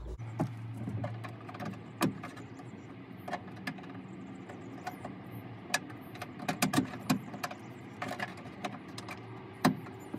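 Scattered clicks and taps of plastic car interior trim being handled and clipped back into place, over a low steady hum.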